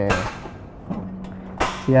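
A couple of sharp metallic clicks and knocks as the stainless-steel cover of a soy milk grinding machine is set down and latched shut with its clamps, the clearest about one and a half seconds in.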